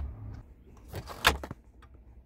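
Plastic center-console drawer of a first-generation Honda Ridgeline pulled forward on its slides, with one sharp clack just over a second in as it reaches the pins that stop its travel, and a few lighter clicks around it.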